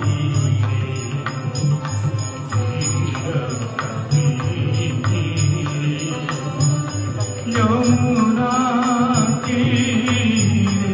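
Indian devotional music: a voice singing a chant through a microphone over a steady beat of drums and percussion. The singing swells near the end.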